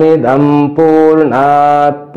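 A man chanting a Sanskrit mantra in long, drawn-out notes on a steady pitch, two held phrases with a short break under a second in.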